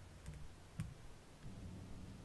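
A few faint clicks in the first second, over a low steady hum.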